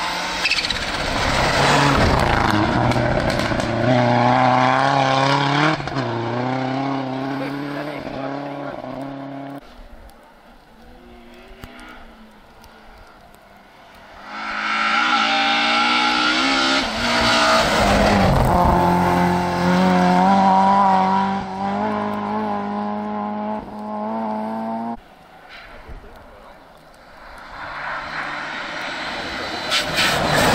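Rally cars passing one after another at full throttle on a snow stage, their engines revving hard with gear changes audible as pitch steps. Each car is loud for about ten seconds and fades. A third car is coming up near the end.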